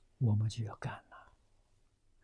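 Speech only: a man speaking a short phrase in Chinese, then pausing.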